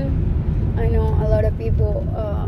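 Steady low rumble of road and engine noise inside a car cabin while driving, with a woman's voice sounding in the second half.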